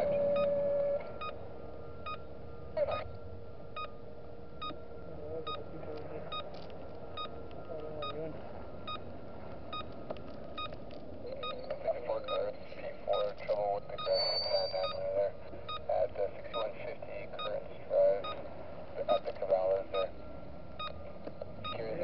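A regular short electronic tick, about one and a half times a second, over a faint steady tone. Indistinct speech comes in over the ticking in the second half.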